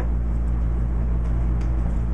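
Steady low-pitched background hum, an unchanging mechanical drone with no speech over it.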